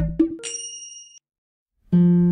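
End of an electronic intro sting: low drum hits die away, then a bright bell-like ding about half a second in rings for under a second. A short gap of silence follows, and plucked acoustic guitar music starts right at the end.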